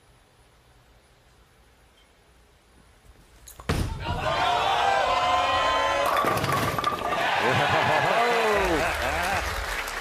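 Near silence, then from just before four seconds men laughing and talking. About six seconds in, a bowling ball crashes into the pins and the pins clatter for a couple of seconds under the laughter.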